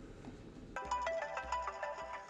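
Mobile phone ringtone: a melodic run of quick, bright notes that starts just under a second in, after a quiet moment. It is the incoming call ringing on the phone being dialled.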